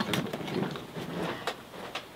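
A hard plastic carry case being carried and handled, with a faint knock about one and a half seconds in, as it is set down on a workbench.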